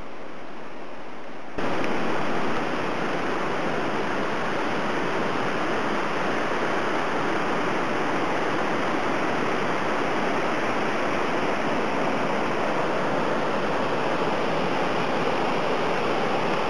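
Steady rushing of water, an even roar with no rhythm. It steps up in loudness about a second and a half in, then holds.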